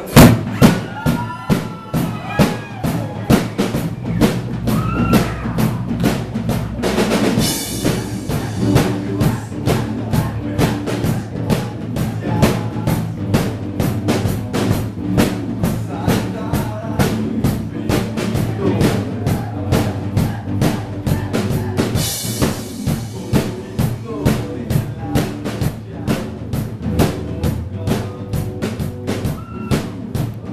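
Live band of drum kit, electric guitars and bass guitar playing a song with a steady driving drum beat, opening on a loud hit. Cymbal washes swell twice, about a quarter and about three quarters of the way through.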